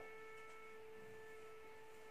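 Near silence with a faint, steady hum: one held tone with fainter overtones above it.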